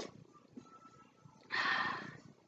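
Eating noises from a person taking hot soup off a spoon: a soft mouth smack at the start, then a short breathy rush of air, like a slurp or a blow, near the end that is the loudest sound.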